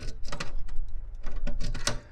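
A ring of keys jangling and clicking against the T-handle lock of an aluminium diamond-plate toolbox as a key is tried in it: a quick, irregular run of sharp metallic clicks.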